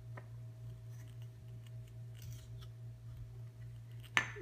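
Faint scraping and light clicks of a wooden toy knife working into the hook-and-loop seam of a wooden toy apple, with a brief soft rasp about two seconds in.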